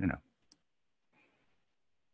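A man's voice trails off at the start, then a single faint, sharp computer keyboard click comes about half a second in, followed by a soft faint rustle.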